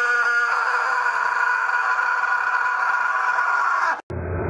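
A teenage boy's long, loud scream held at one steady pitch, cutting off suddenly at the end.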